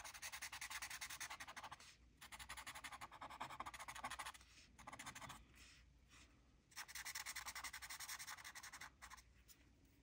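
Paper tortillon (blending stump) rubbing graphite shading on a small paper drawing tile in quick, short back-and-forth strokes, faint, in several bouts with brief pauses and a longer pause around the middle.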